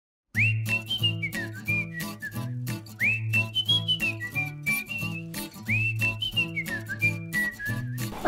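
Upbeat intro music: a whistled melody over a bass line and a light, steady beat. The same short phrase comes three times, each opening with an upward swoop.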